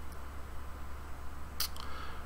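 Steady low electrical hum and hiss under a quiet desk recording, with a few short clicks near the end.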